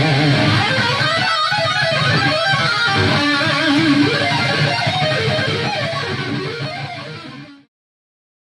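Loud electric guitar playing through an amplifier, picked up by GuitarHeads Hexbucker humbucker pickups. It tapers off from about five seconds in and cuts off abruptly near the end.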